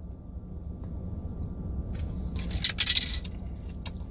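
Plastic blender bottle handled after a drink: a quick cluster of clicks and light rattles in the second half, over a steady low rumble in the car cabin.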